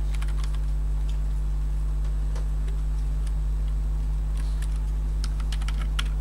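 Typing on a computer keyboard: scattered, faint key clicks as a command is entered, over a steady low hum.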